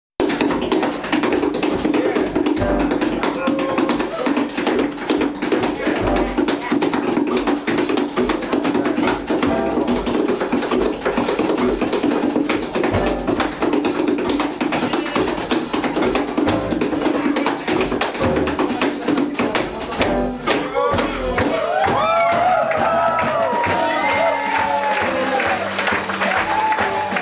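Tap shoes striking the stage in fast, dense rhythms over a live jazz combo of piano, double bass and drums playing a blues; near the end a saxophone comes in with bending melodic phrases.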